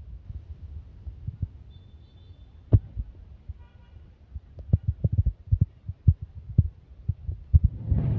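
Low, irregular thumps and bumps of a handheld phone being moved and panned, knocking on its own microphone; a few are scattered early, the sharpest comes just before three seconds in, and they cluster several a second in the second half.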